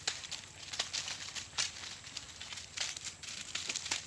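Eggplant leaves and dry straw mulch rustling and crackling as an eggplant is handled for cutting, a run of irregular short crackles.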